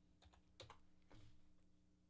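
Near silence: a faint steady hum, with two faint soft sounds about half a second and a second in.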